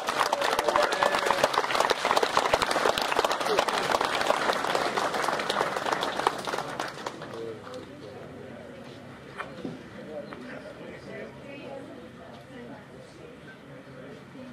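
A small crowd applauding, dense hand-clapping that thins out and dies away after about seven seconds, leaving faint murmuring voices.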